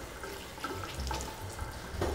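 Kitchen tap running steadily while a bunch of parsley is rinsed under it.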